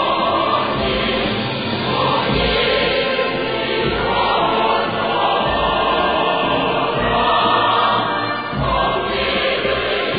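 A choir singing a North Korean song with instrumental accompaniment, steady and full. The recording has no treble, giving it a dull, old-sounding tone.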